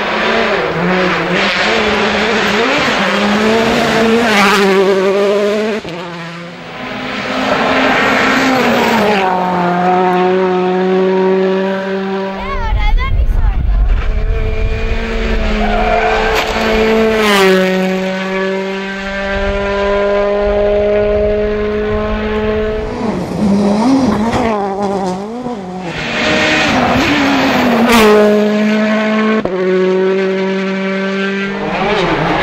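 Rally cars at full throttle on a special stage, their engine notes climbing and dropping sharply through gear changes as they go by one after another. A deep rumble comes in about halfway through.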